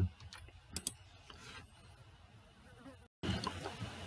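Near-quiet pause: faint room noise with a soft click about a second in, then a brief drop to total silence about three seconds in at an edit, followed by a slightly louder background hiss.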